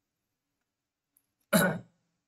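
A man coughs once, a short sudden burst about one and a half seconds in.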